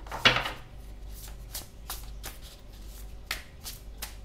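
A tarot card deck being shuffled by hand. A louder burst of card noise comes about a quarter second in, followed by a string of short, irregular card snaps.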